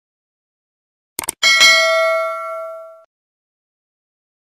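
Sound effect of quick clicks followed by a bright bell ding that rings and fades out over about a second and a half: a notification-bell effect.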